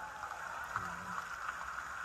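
Steady background murmur and hiss of a large seated crowd, with no clear single event.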